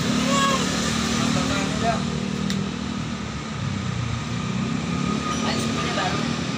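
A steady low mechanical hum and rumble runs throughout, with a thin steady whine above it. A man's voice is heard briefly about half a second in.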